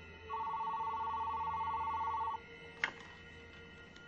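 White corded landline telephone ringing once: a warbling two-tone ring lasting about two seconds. A short click follows as the handset is picked up.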